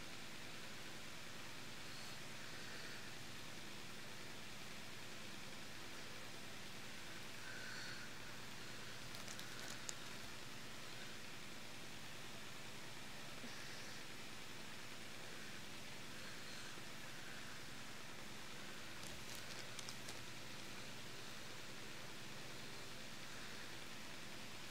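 Steady faint hiss with light rustling and a few small clicks, about ten seconds in and again near twenty seconds, as fingers work an ear-stretching plug into the earlobe.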